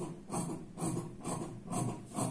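Large tailoring scissors cutting through cloth in short repeated snips, about two a second, working along a curved edge.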